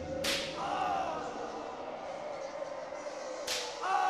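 Two sharp whip cracks about three seconds apart, each followed by a brief wavering cry.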